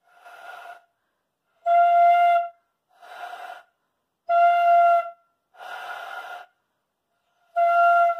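Bamboo pífano (transverse fife) blown in six short breaths, alternating between airy blows that give mostly breath noise with a faint note and clear, loud notes at the same steady pitch. The airy blows are the air going forward past the embouchure hole instead of into the flute; the clear notes are the air entering the hole.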